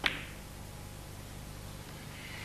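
Snooker cue tip striking the cue ball: one sharp click right at the start, with the cue ball sitting very close to the blue.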